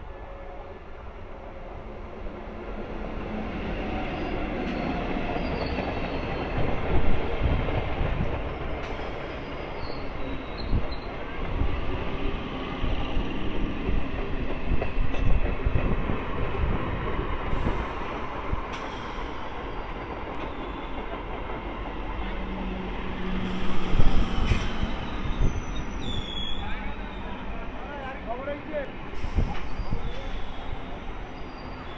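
Old electric multiple unit (EMU) local train approaching and then running past close by at speed. It is a rumble that builds over the first few seconds into the steady loud noise of wheels and coaches going by, with a few sharp knocks along the way.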